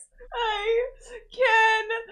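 A woman's high-pitched whimpering cries, two drawn-out ones about a second apart, in flustered embarrassment broken by laughter.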